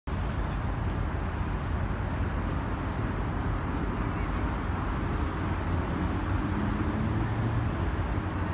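Steady low rumble of waterfront ambient noise, with a faint low hum coming up over it in the last two seconds.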